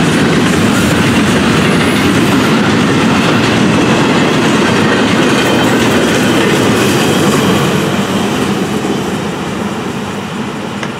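Double-stack intermodal freight cars rolling past close by: a loud, steady rumble and clatter of steel wheels on the rails. It fades from about eight seconds in as the last car goes by.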